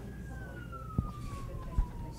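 A single siren tone gliding slowly down in pitch, with two sharp knocks, about a second in and near the end.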